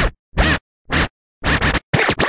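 Record-scratching effect in a break of a rock song: four or five short scratch strokes, each sweeping in pitch, separated by silent gaps.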